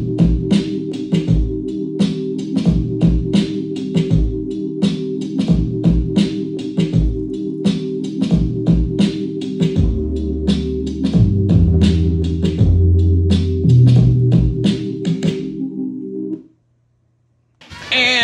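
A beat played back on an Akai MPC 60 sampler: a looped drum pattern of kicks and hi-hats over a sustained sampled chord, with a deeper bass line coming in about ten seconds in. The music stops about a second and a half before the end.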